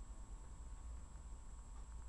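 Faint room tone: a steady low hum with thin steady high tones over it, and no knocking.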